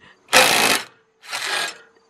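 Cordless impact driver hammering in two short bursts about a second apart, the second quieter, as it drives a drill bit into thick steel bumper metal.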